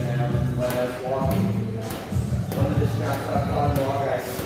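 A man's voice talking, with a few sharp knocks of gloved punches landing on a heavy bag.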